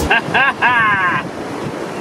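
Ocean surf and wind buffeting the microphone, with a high-pitched voice calling out briefly in the first second.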